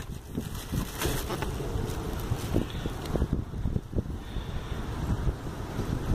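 Thin plastic shopping bag rustling and crackling as a hand digs through VHS tape cases inside it, with irregular small knocks and wind rumbling on the phone microphone.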